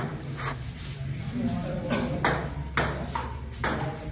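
Table tennis ball being hit back and forth in a rally, a series of sharp clicks off the paddles and the table at uneven gaps.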